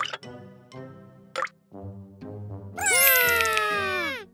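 Light children's cartoon background music with small plopping sound effects. Near the end comes a loud, voice-like cartoon sound effect that slides slowly down in pitch for about a second.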